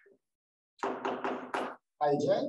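Chalk knocking and scraping on a blackboard as characters are written: about four short, sharp strokes in quick succession in the second half.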